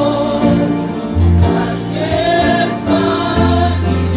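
Gospel singing with band accompaniment: voices carrying a sung melody over held low bass notes.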